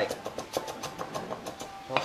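Kitchen utensils clicking and tapping lightly and irregularly, several taps a second, during food preparation.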